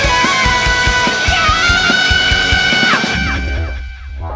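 Rock song without vocals: a guitar plays sustained, bending lead notes over drums. About three seconds in, the lead slides downward and the drums stop, leaving a low held note that fades away.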